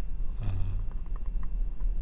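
A steady low hum under a short spoken 'uh', then a few light clicks from a stylus on a drawing tablet as the lecturer draws a chemical structure.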